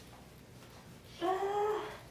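A person's short cry of pain as a thumb presses hard into a tired, stiff calf during strong shiatsu. It comes about a second in as one held, slightly rising note lasting under a second.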